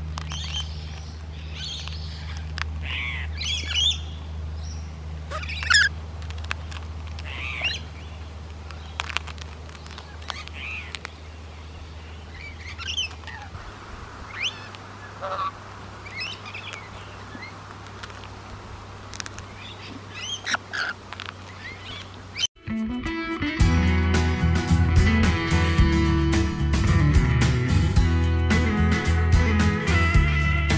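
Rainbow lorikeets calling close by in short, scattered chirps as they perch and feed from a hand, over a low steady hum that fades out about halfway. About 22 seconds in the birds cut off and guitar-led country music starts.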